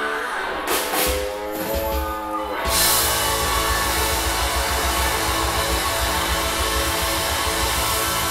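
Live soul band: held notes over sparse accompaniment with a couple of cymbal hits, then about three seconds in the full band comes in with drums, bass and electric guitar.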